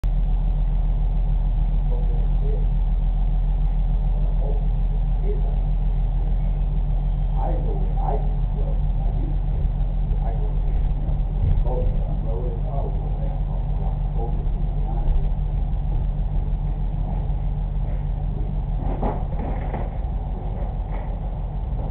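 Muffled men's voices talking on and off through a glass door, over a steady low hum.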